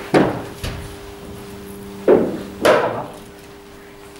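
Hard knocks of a leather cricket ball in an indoor net: a sharp crack of bat on ball right at the start, then two more knocks about two seconds in, half a second apart. A faint steady hum runs underneath.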